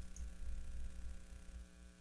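A faint, steady electrical hum under the room tone of the recording.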